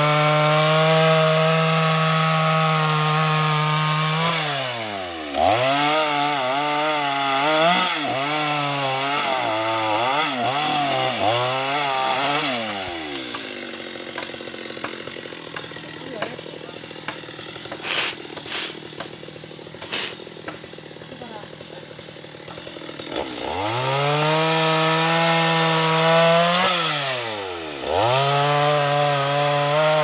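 Two-stroke chainsaw cutting a felled mahogany trunk at full throttle, then revved up and down in short bursts. It drops to a quieter idle for about ten seconds, with a few sharp knocks in the middle, then goes back to full throttle for another cut near the end.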